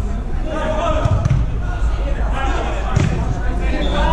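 A football kicked on artificial turf in an indoor hall: two sharp strikes, about a second in and again at three seconds. Players' shouts run around them over a steady low rumble.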